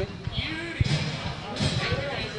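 Indistinct voices talking, with a sharp knock a little under a second in and a few fainter knocks around it.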